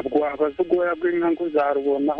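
Speech: a person talking without pause.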